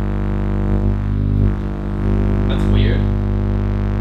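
Microwave oven running with its outer casing removed: a loud, steady electrical hum with many overtones from its high-voltage transformer and magnetron.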